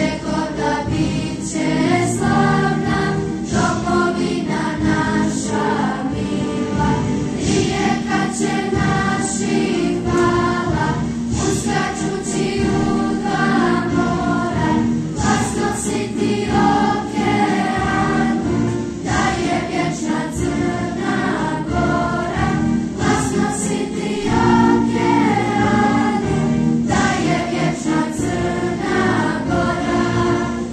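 A children's school choir of boys and girls singing a song together, with long held notes.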